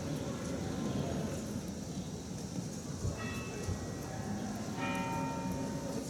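Bells ringing in a few spells of struck tones that ring on and fade, over a steady low rumble of street noise.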